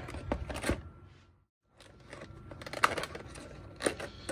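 Plastic blister packaging being handled and opened, its corner stickers peeled free: crinkling, rustling and sharp plastic clicks. The sound cuts out completely for a moment about a second and a half in.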